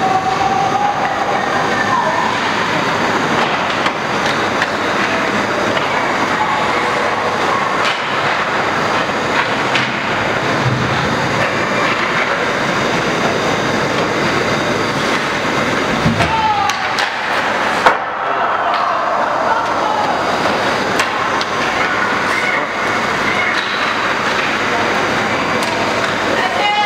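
Steady din of an indoor ice hockey game: voices calling out over a constant noisy rink background, with a single sharp knock about two-thirds of the way through.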